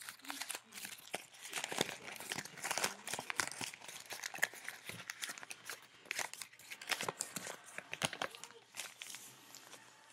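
A sheet of white printer paper being crumpled and handled, with dense irregular crinkling crackles that thin out near the end.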